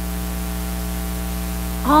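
Steady electrical mains hum with a faint hiss on the recording, running unchanged; a spoken word begins near the end.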